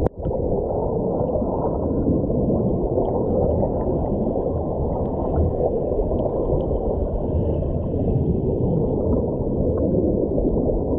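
Bubbling, flowing water heard from under water: a steady, dense gurgling rumble with little high sound in it. It drops out for a moment right at the start.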